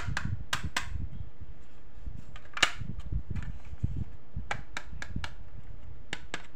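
Sharp clicks and taps from hands handling a hard plastic high-heel-shaped toy case, over a low rumble of handling. The loudest click comes a little before halfway, and a quick run of four clicks comes near the end.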